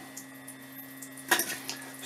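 A few light knocks and clicks about a second and a half in, as a homemade PVC-pipe socket tool is handled on a tank's bulkhead fitting, over a steady low hum.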